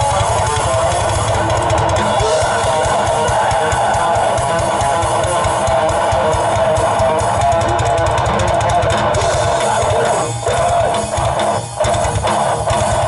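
Live heavy metal band playing: electric guitars, bass guitar and drum kit, with fast, dense drumming under sustained guitar chords. The playing drops out briefly twice near the end.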